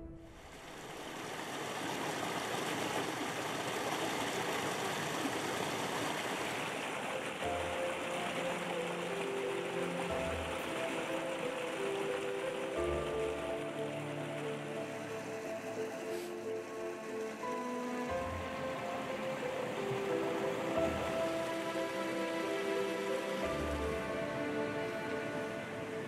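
Water of a small, partly frozen stream running steadily over rocks. Soft background music of sustained notes and low pulses comes in about a third of the way through.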